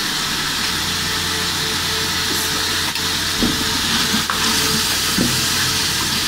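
Shredded chicken and spice masala frying in oil in a cooking pot: a steady sizzle, at the stage where the oil is starting to separate and rise. A wooden spatula stirs and scrapes the pot a few times in the second half.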